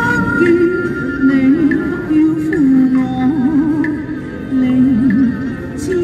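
A woman singing a slow melody into a microphone, her held notes wavering with vibrato, with a violin playing a line above her voice.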